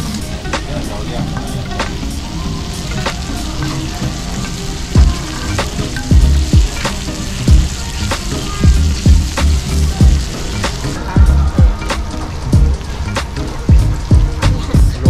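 Pork belly slices sizzling on a hot griddle plate, with scattered clicks of metal tongs against the plate. Background music with a thumping bass beat comes in about five seconds in.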